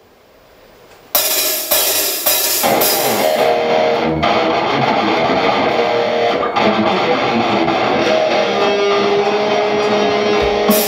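Rock band playing live through amplifiers, electric guitars, bass and drum kit, picked up by a camcorder's built-in microphone. After about a second of low stage noise, the band comes in suddenly with three loud hits about half a second apart, then plays on steadily.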